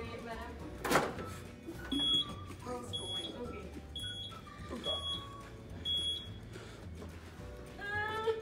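Mobility scooter's reverse warning beeper sounding five short, high beeps about a second apart as the scooter is manoeuvred, over background music. A single sharp knock comes about a second in.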